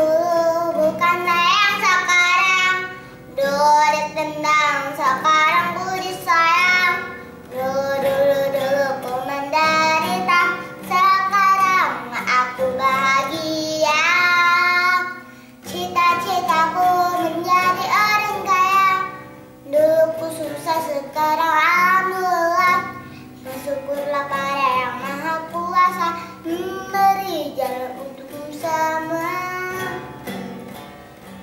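A young girl singing an Indonesian song in sung phrases of a few seconds each, with brief breaths between them and a longer break about fifteen seconds in, over a light guitar accompaniment.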